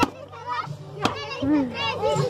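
Children and adults calling out around a piñata, with sharp knocks at the start, about a second in and near the end as a wooden stick strikes it.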